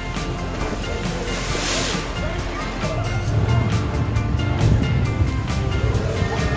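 Background music with a steady beat, with a rushing noise like water underneath.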